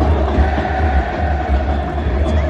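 Large football crowd singing a chant together in unison, many voices merged into one sustained sound, over a heavy low rumble.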